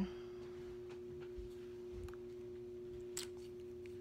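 A steady, faint two-tone hum in a quiet room, with a faint click about three seconds in.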